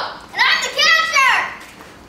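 A child's high-pitched voice: two short vocal cries that fall steeply in pitch, over the first second and a half, with no clear words.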